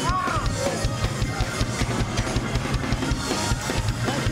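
Live church band playing fast, driving praise music, led by a busy drum kit over steady bass. A voice cries out briefly near the start.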